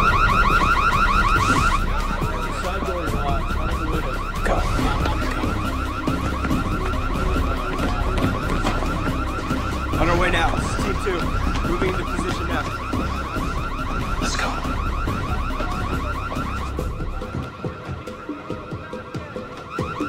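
Car alarm going off: a rapid electronic warble repeating steadily and growing fainter toward the end, with a low rumble beneath it until near the end.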